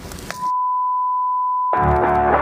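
A steady electronic beep at a single pitch, edited in, starts about a third of a second in. All other sound drops out beneath it, and it holds for over a second. Near the end it cuts off as music with guitar begins.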